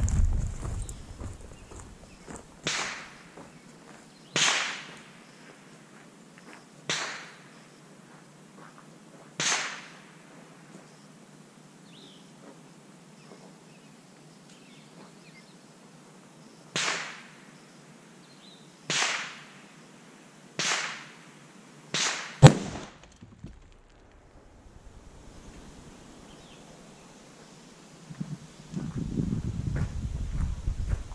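A 300 PRC rifle shot, the 175 gr Federal Edge TLR bullet striking ballistic gel at high velocity: one sharp, very loud crack about three quarters of the way through, just after a smaller snap. Before it, about eight brief swishing sounds come and go at uneven intervals.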